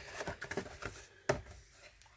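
Mat board and paper being handled and slid across a tabletop as they are turned, with a single sharp tap a little past halfway.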